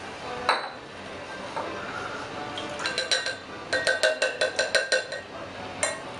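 Metal bar tin and glassware clinking as a muddled mint and lime mixture is transferred into a serving glass: one clink about half a second in, then a quick run of about ten ringing taps in the second half.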